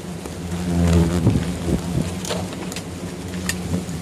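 Scattered rustles, knocks and splashes from a small wooden boat moving among water hyacinth, with water sloshing in its flooded hull. A steady low hum runs underneath and swells briefly about a second in.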